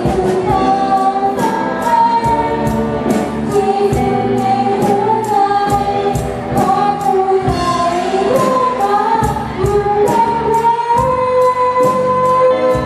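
A girl singing a slow melody into a microphone with held, wavering notes, backed by a live band of bass guitar and drums that keep a steady beat.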